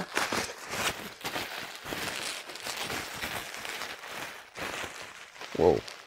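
Plastic bubble wrap rustling and crinkling as it is pulled open by hand, a busy run of irregular crackles.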